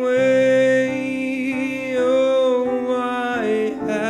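A singing voice holding long notes over digital piano chords, in a slow, gentle acoustic pop song.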